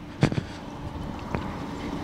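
Footsteps on loose, clumpy dirt at the edge of a dirt race track, a few short scuffs a quarter second in and again past a second, over a faint steady hum and wind noise on the microphone.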